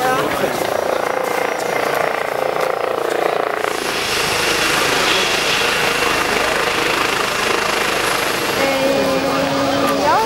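Eurocopter EC135 air-ambulance helicopter running on the ground with its rotor turning, a steady engine noise with a thin high whine over it. It comes in suddenly about a third of the way in, replacing the voices and crowd sound.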